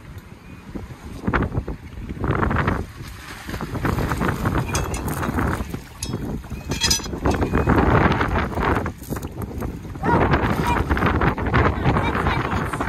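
Wind buffeting the microphone in gusts, with water splashing as a person drops off a boat's stern into shallow water and wades away with the anchor line.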